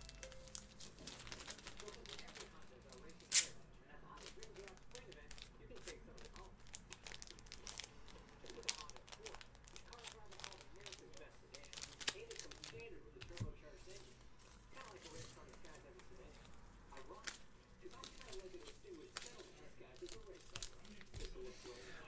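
Faint rustling and crinkling of paper and plastic being handled, with scattered small clicks and one sharper click a few seconds in.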